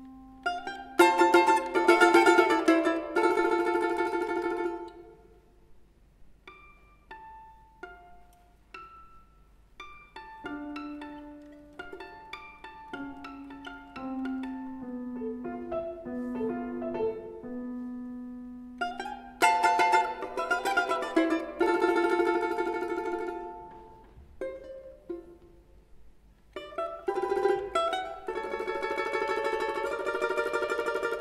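Domra and piano playing a concerto movement together: loud, dense plucked passages alternate with sparse, quieter single notes. In the quieter stretch, a low line falls step by step.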